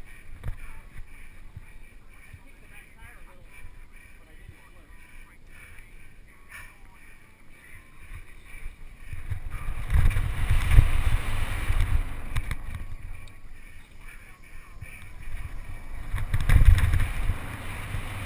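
Mountain bike riding fast down a dirt singletrack: wind buffeting the camera microphone over the rumble of the tyres and bike on the rough trail, growing loud about ten seconds in and again near the end.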